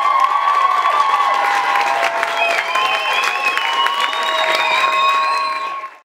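Theatre audience applauding and cheering at the end of a number: dense clapping with many high, held shrieks and whoops over it, fading out in the last half second.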